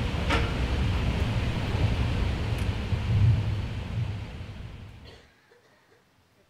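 Audience applauding, a dense steady clatter that fades away about four to five seconds in.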